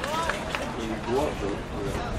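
People talking, with a steady outdoor noise behind the voices.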